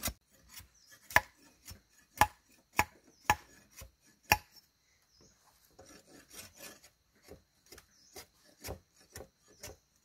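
Machete blade chopping at a thin wooden sapling pole: five sharp, loud strikes about a second apart, then lighter, quicker knocks and scraping as it trims the pole.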